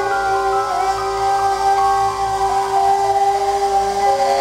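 Live soul band music: a sustained held chord with a female voice holding a long note over it.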